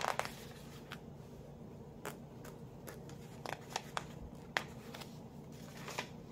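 Faint, scattered rustles and flicks of thin paper pages as a Bible is leafed through, the strongest right at the start.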